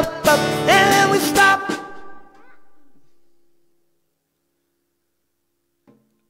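Acoustic guitar strumming with a man singing and drum and cymbal hits, stopping about two seconds in and ringing away. Then near silence for about two seconds, with a small click near the end.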